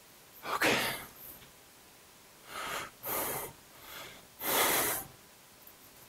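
A man's forceful exhales while straining to flex his muscles: four breathy blows, the last the longest and loudest.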